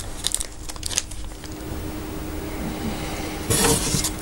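Thin plastic packet of small screws crinkling as it is handled and opened, then a short clatter near the end as the small metal screws are tipped out onto paper.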